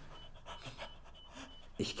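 Faint, heavy breathing, with soft breaths coming and going, in a quiet, tense pause.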